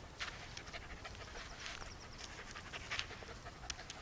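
A puppy panting faintly and quickly, a run of short breathy puffs several times a second.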